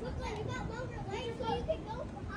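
Children's high voices calling and shouting, the pitch wavering up and down, over low steady background noise.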